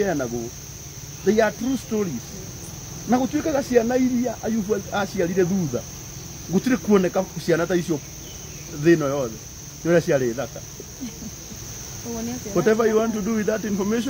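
Crickets chirring in a steady, high, unbroken tone, under a conversation between two people that is louder than the insects.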